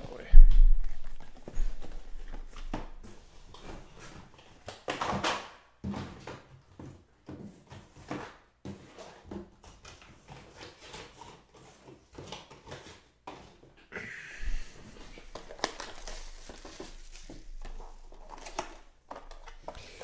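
Small cardboard trading-card boxes being handled and opened by hand: a loud thump about half a second in, then scattered irregular knocks and rustling handling noises.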